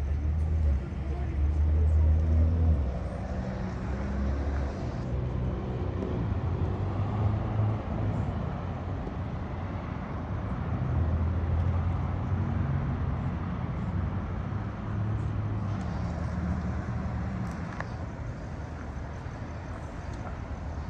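Vehicle engines idling with passing road traffic, a low steady rumble that swells and eases, with faint indistinct voices underneath.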